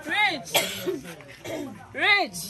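A person coughing loudly and theatrically: a voiced cough just after the start, a harsh rasping burst right after it, and another voiced cough at the very end.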